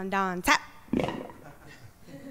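A person's voice giving two short held calls, the second slightly rising, right after the band stops playing, followed by a sharp click and a brief breathy burst.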